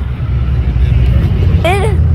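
Low, steady engine rumble of road traffic, swelling slightly; speech begins near the end.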